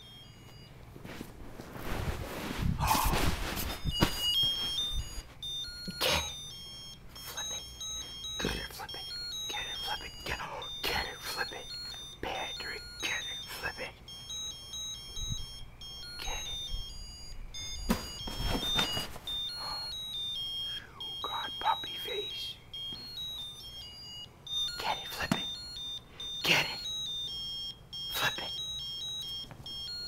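A small electronic toy dreidel playing a high, beeping tune that hops from note to note, mixed with frequent knocks and rustling, loudest a few seconds in.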